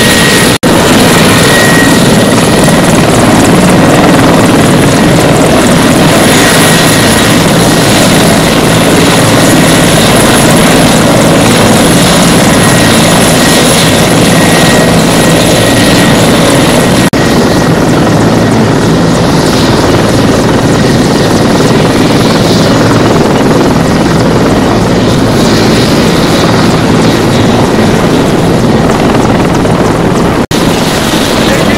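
Mil Mi-24/Mi-35 "Hind" attack helicopter running on the ground with its rotors turning: a loud, steady turbine and rotor noise with a constant low hum.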